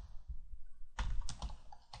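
Typing on a computer keyboard: a keystroke at the start, a quick run of several keystrokes about a second in, and another near the end.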